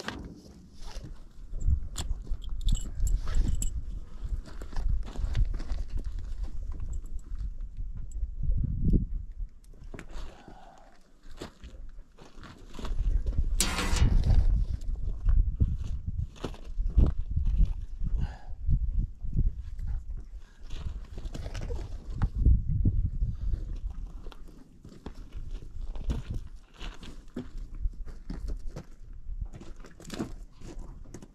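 A mule being saddled: tack creaking and rattling and hooves shifting on gravel, over a heavy low rumble that rises and falls. A louder, harsher burst about halfway through.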